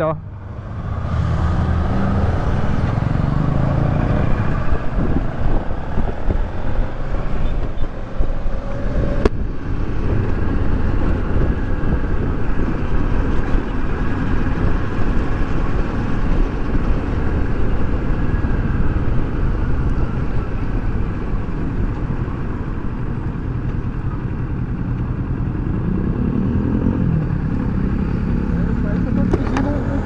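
Kawasaki Versys 650 parallel-twin motorcycle under way on a city road, heard from the rider's seat with wind rushing over the microphone. It moves off about a second in, runs steadily at road speed, and the engine note falls as the bike slows to a stop near the end.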